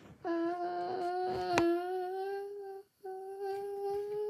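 A person humming long, steady held notes. The first note stops a little under three seconds in and the second begins right after. A single light click sounds about a second and a half in.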